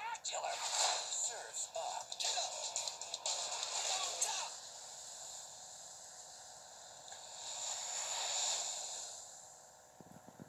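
Animated film trailer soundtrack played through a portable DVD player's small speaker, with no bass. For the first four seconds or so music, cartoon voices and quick sound effects crowd together; then it goes quieter, with a swell of noise that rises and fades about eight seconds in, under the closing title cards.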